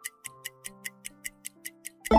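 Quiz countdown timer ticking fast and evenly, about five ticks a second, over soft sustained background music.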